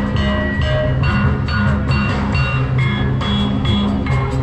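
Javanese gamelan music accompanying the dance: struck metal keys ring out a steady run of notes over drumming.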